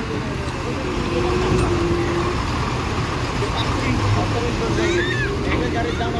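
Tata dump truck driving slowly past at close range, its diesel engine running steadily with tyre noise on the wet gravel road.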